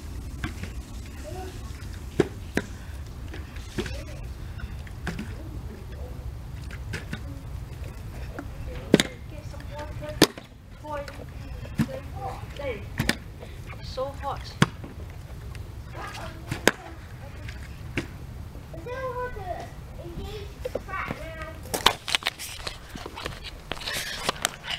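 A plastic water bottle is flipped again and again, knocking down onto a grass lawn in sharp thumps every one to a few seconds, over a steady low background rumble.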